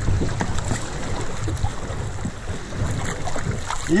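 River water splashing and sloshing around canoe hulls, with a few short knocks and wind rumbling on the microphone.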